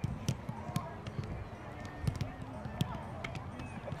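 Soccer balls being kicked and passed on artificial turf: a run of sharp thumps at irregular intervals, several balls struck in quick succession, with players' voices faint in the background.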